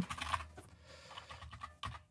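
Computer keyboard typing: a few soft, scattered keystrokes.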